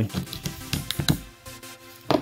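Side cutters snipping the nickel strip off an 18650 laptop-battery pack: several sharp clicks in the first second and a half, over background music.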